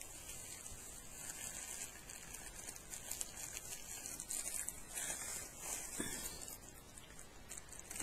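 Faint rustling and a few light taps of small items being handled.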